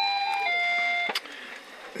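An electronic two-tone beep, a higher note then a slightly lower one, lasting about a second in all. It is followed by a single click.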